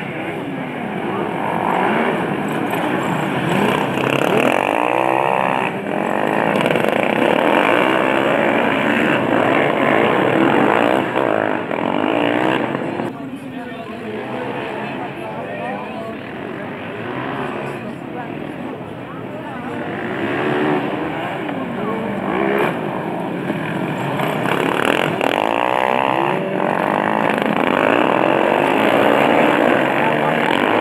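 Engines of several racing ride-on lawnmowers revving up and down as they pass, with pitch rising and falling. The sound swells as a pack comes by near the end.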